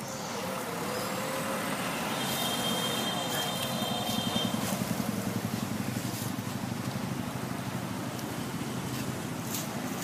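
Road traffic going by: motorbike and car engines passing, with engine noise swelling to a peak about four seconds in. A thin high steady tone sounds briefly about two seconds in.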